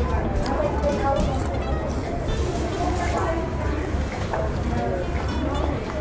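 Indistinct voices over a steady low hum: the background chatter of a busy fast-food restaurant, with no words picked out.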